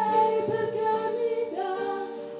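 A woman singing long held notes into a handheld microphone, her pitch stepping up about one and a half seconds in.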